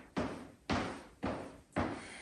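Footsteps of two people marching in place in sneakers on a wooden floor, an even run of soft thuds about two a second.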